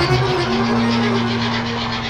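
H0 model train running along the track, with a rapid, regular clicking pulse; steady held tones, like music, sound underneath.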